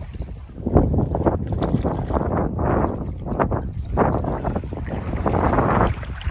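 Wind buffeting the microphone with irregular splashing and sloshing of river water as a hooked brown trout thrashes at the surface and is scooped into a landing net.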